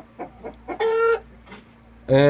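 Two-month-old Indian-breed chickens: one gives a single clear call about half a second long near the middle, held at one steady pitch. A few brief, fainter peeps come just before it.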